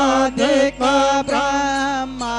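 A voice singing the Hindu aarti hymn to Shiva in long, held notes with short breaths between phrases, over a faint steady low hum.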